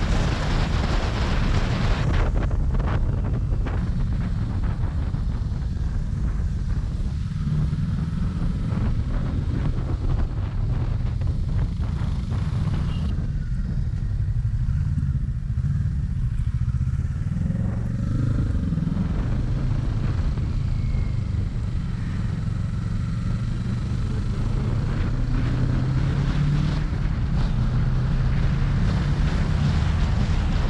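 Sport motorcycle engine running on the road, with wind rushing over the microphone, loudest in the first couple of seconds at speed. The hiss eases mid-way as the bike slows for a bend, then the engine note climbs again as it accelerates away.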